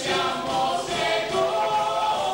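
Many voices singing a melody together at a live rock concert, holding long notes, with little sound from the instruments.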